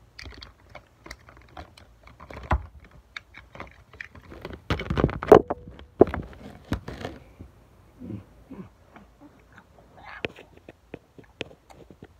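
Toys and hands being handled on a plastic tray right at the microphone: a run of irregular clicks, taps and knocks, busiest and loudest about five seconds in, with the recording device itself being bumped as a hand covers it.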